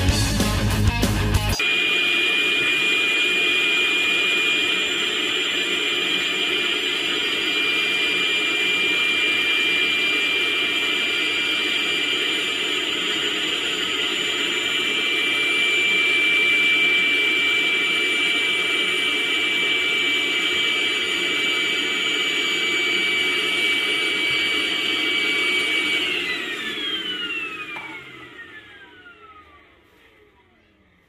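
Milwaukee M18 compact cordless vacuum running steadily with a high whine, then winding down in falling pitch about 26 seconds in and stopping as its M18 5.0 Ah battery runs flat. A moment of music plays at the very start.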